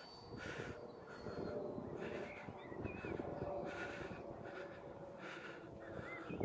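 A series of harsh bird calls, repeated every half second to a second, with a few short chirps near the middle. Under them, a faint thin high whine from the model jet's ducted fan fades out in the first two seconds.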